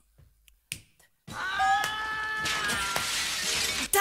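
A cappella vocal-track audio: a few sharp snap-like clicks in a near-silent opening, the loudest a little under a second in. Then, from about a second and a half in until just before the end, comes a long held note with steady overtones. It slides briefly upward at its start and has a hissing, crashing noise over its second half.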